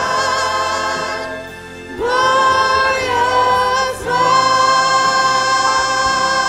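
Church choir singing a gospel hymn in long held notes. The sound fades for a moment about a second and a half in, then the voices come back in strongly at two seconds, with a brief break again near four seconds.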